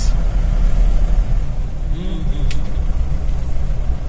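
Steady low rumble of a car's engine and tyres on the road, heard from inside the cabin while driving. A brief murmur of a voice comes about two seconds in.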